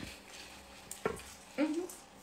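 Quiet pause with a faint hiss, a click about a second in, and a short rising hum from a woman's voice near the end.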